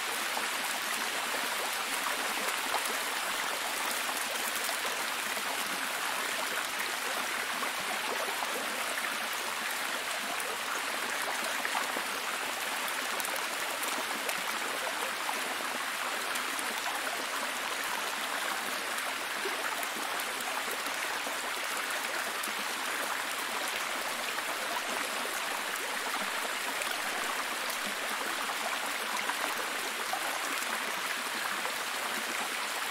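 A cascading waterfall over rocks: a steady, unbroken rush of water, mostly a bright hiss with little low rumble.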